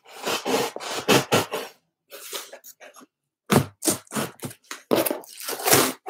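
Rustling and scraping of packaging inside an open cardboard box as items are handled and lifted out, in a run of short noisy bursts with brief pauses around two and three seconds in.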